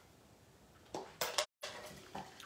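Near silence, then a few faint, short handling clicks and rustles of craft supplies on a desk about a second in; the sound drops out completely for an instant just after.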